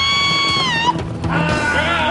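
A child's voice crying out a long, high 'Aaah' in fright, held steady for about a second before it breaks off, over background music.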